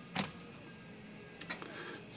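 Smith Corona portable typewriter's type-bar mechanism clicking: one sharp click just after the start and a fainter one about a second and a half in, as the freshly resoldered lowercase 'o' type slug is worked up to the platen to test its alignment.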